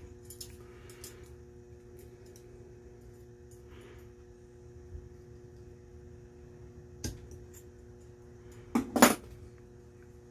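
Small metal clicks and clinks of snap-ring pliers and a retaining ring worked against a power steering pump housing, with a sharper click about seven seconds in and a louder double knock near the end. A steady low hum runs underneath.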